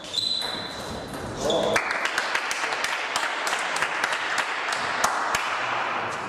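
Table tennis ball pinging off table and bats at the close of a rally, then from about two seconds in spectators clapping and cheering until the end.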